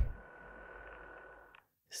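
A telephone ringing heard faintly down the line, a thin steady tone over hiss that stops about a second and a half in. A louder low sound dies away right at the start.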